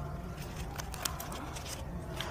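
Scissors snipping rough edges off a piece cut from a foam tray, a series of short clicks.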